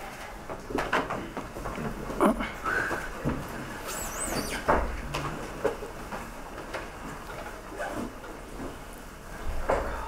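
Press-room bustle: scattered knocks and clicks of phones and recorders being set down on a table, with shuffling and faint brief voices. A short high wavering squeak about four seconds in.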